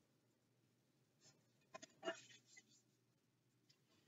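Near silence, with a faint, brief rustle of a picture book's paper page being turned about two seconds in.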